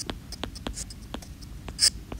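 Stylus writing on a tablet's glass screen: a run of short, sharp taps and ticks as strokes are made, with a brief, louder scratch near the end.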